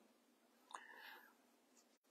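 Near silence in a pause between spoken sentences, with a faint mouth click and a soft breath just under a second in.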